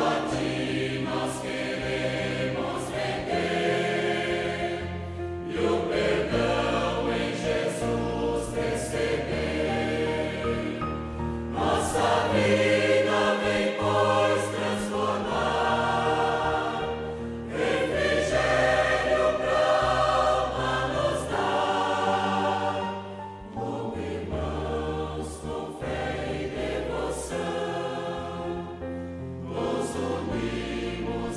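A choir singing a hymn over instrumental accompaniment, in sustained phrases of about six seconds each.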